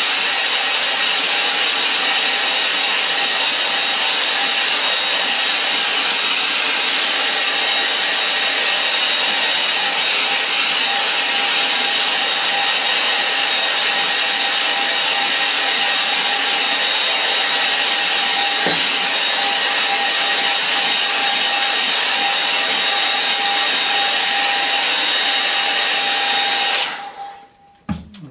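Hand-held hair dryer running steadily over a wet watercolour wash to dry it: a loud, even rush of air with a steady whine. It switches off about a second before the end.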